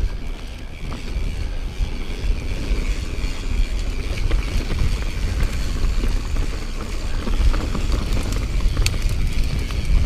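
Mountain bike ridden along a dirt trail: wind rumble on the microphone over the sound of the tyres on dirt, with occasional short clicks and rattles from the bike.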